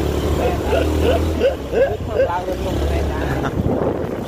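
Small motorbike engine running steadily as the bike rides along a bumpy dirt forest trail, with short vocal sounds over it in the first couple of seconds.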